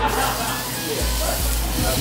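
A plant-based burger patty sizzling on a hot gas grill grate, an even hiss, with background music and low voices.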